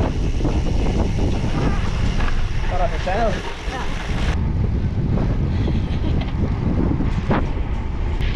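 Wind buffeting the microphone of a camera on a moving gravel bike, a steady low rush, with a brief voice about three seconds in and a single sharp click near the end.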